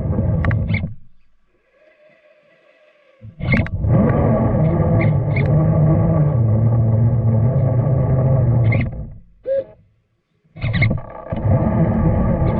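Electric motor and gear drivetrain of a radio-controlled crawler truck whining under throttle, heard close to the onboard camera. It cuts off about a second in, picks up again after about three seconds, stops with a short blip, and starts again near the end.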